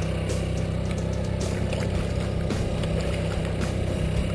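A boat's motor running steadily at a low hum, with a few faint ticks over it.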